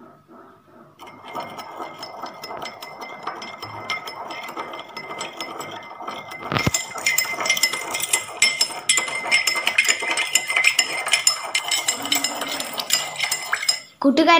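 Metal spoon stirring a powder into water in a drinking glass, clinking quickly and repeatedly against the glass. A single knock comes about halfway through, and the clinking is louder after it.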